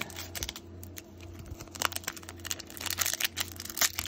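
Foil wrapper of a baseball card pack crinkling and tearing as fingers peel it open: a run of small crackles that comes faster toward the end.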